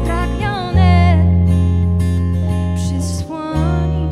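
Live band music: a woman singing over acoustic guitar and deep sustained bass notes. The bass note changes about three-quarters of a second in and again shortly before the end.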